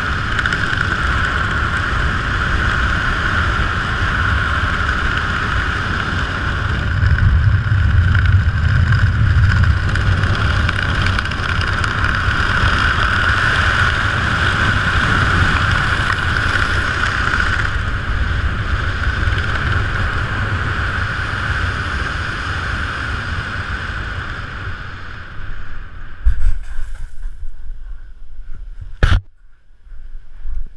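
Wind rushing over a helmet-mounted camera during a parachute canopy descent, loudest for a few seconds early on and dying away in the last few seconds as the canopy flares and slows for landing. A few thumps near the end as the skydiver touches down, then a sharp click.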